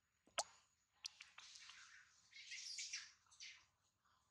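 Faint rustling and clicking: one sharp click about half a second in, then a few more clicks and a stretch of soft rustling, as of dry leaves being stirred.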